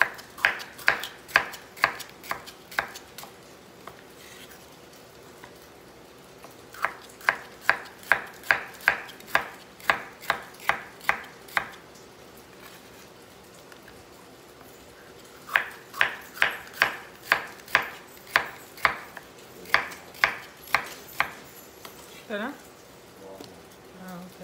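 Chef's knife slicing fresh bitter melon on a bamboo cutting board, each stroke ending in a sharp knock on the board at about two a second. The slicing comes in three runs with short pauses between.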